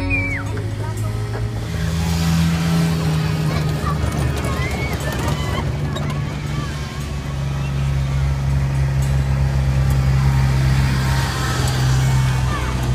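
Engine of a small vehicle towing a train of barrel ride cars, running at a steady low hum, with riders' voices over it.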